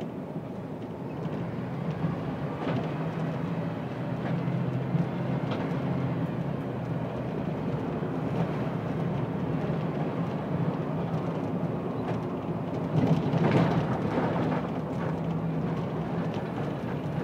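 City bus engine running as the bus drives along, heard from inside the bus as a steady low drone with road noise. There is a brief louder stretch about thirteen seconds in.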